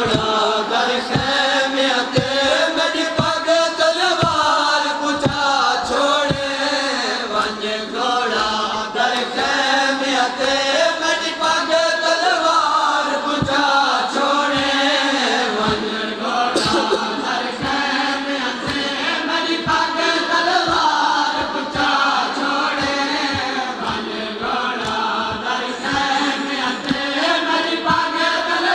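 Men chanting a nauha, a Shia mourning lament, in a steady rhythmic melody, with a regular beat of low thumps beneath it from hands striking chests in matam.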